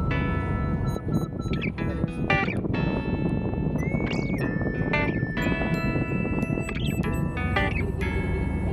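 Background music: a song with plucked guitar.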